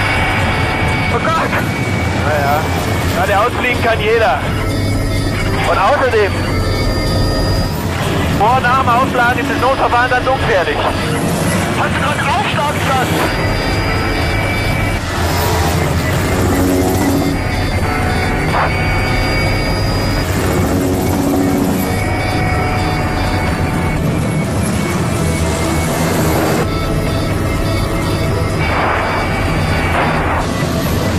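Film soundtrack: background music over a steady low engine drone, with indistinct voices calling out in the first half.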